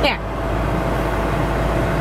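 Steady low rumble of a car heard from inside the cabin while driving, with a faint steady hum over it.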